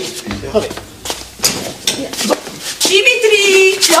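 Mostly speech: a short spoken word, then scuffling and clothing rustle as a person is pulled up off the floor, and a long drawn-out voiced exclamation near the end.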